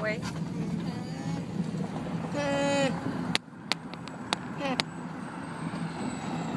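Steady low road and engine noise inside a moving minivan's cabin. About two and a half seconds in there is a loud, half-second pitched hum-like call, and a little later a short call falling in pitch, with a few sharp clicks in between.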